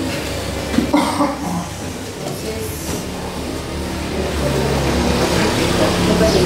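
Indistinct murmur of voices in a room over a steady low hum.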